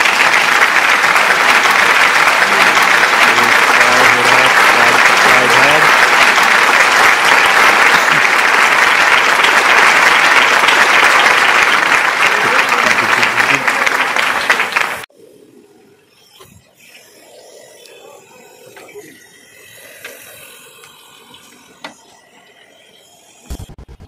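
Food frying in hot oil in a large iron kadhai over a gas burner: a loud, dense sizzle and crackle that cuts off abruptly about fifteen seconds in, after which only faint background sounds remain.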